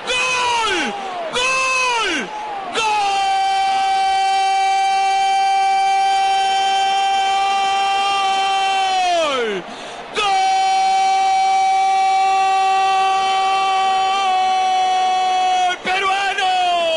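Football commentator's goal cry: two short shouts of "gol", then two long drawn-out "gooool" calls held at a steady high pitch for several seconds each, each dropping away at the end, over faint crowd noise.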